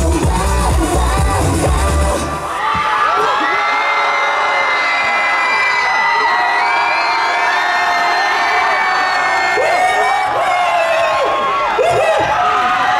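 A K-pop dance track with heavy bass plays over an outdoor PA speaker and ends about two seconds in. A crowd of fans then cheers and screams in many high voices.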